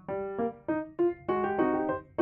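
Light, bouncy solo piano tune: short, quickly fading notes struck a few times a second, with fuller chords in the second half.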